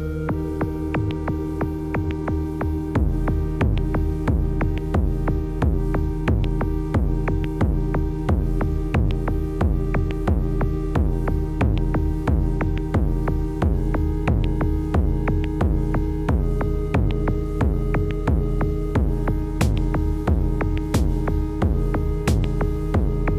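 Electronic music played live on a Novation Circuit groovebox: sustained synth pad chords, joined about three seconds in by a steady, evenly repeating kick drum pulse.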